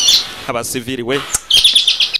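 Bird chirping, with a quick run of high, repeated chirps in the last half second.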